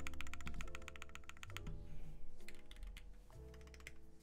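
Typing on a Keychron Q2 mechanical keyboard built with lubed and filmed Alpaca linear switches, PBT keycaps and a tape-modded PCB: quick runs of keystrokes, densest at the start and again about halfway through, over background music.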